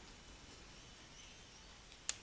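Near silence: faint room tone in a pause in the narration.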